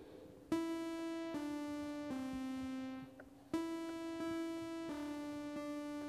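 Sonic Pi's sawtooth-wave synth playing notes keyed from a USB MIDI keyboard. A short descending run of held notes, each just under a second long, is followed by a brief gap about three seconds in, then a second descending run.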